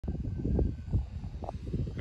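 Wind buffeting the microphone outdoors: a low, uneven rumble, with two faint short tones partway through.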